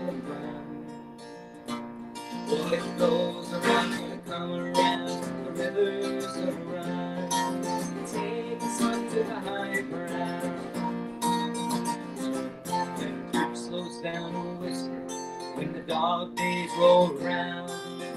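Acoustic guitar strummed steadily through an instrumental passage of a song, with a sustained melody line held over the chords.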